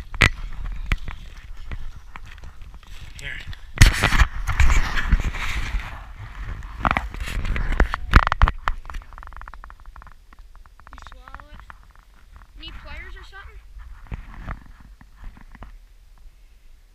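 Laughter and voices over irregular rustling and knocking, with louder bursts about four and eight seconds in, while a freshly landed fish is being handled.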